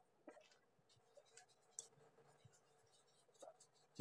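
Near silence, with a few faint scratches of a paintbrush on paper.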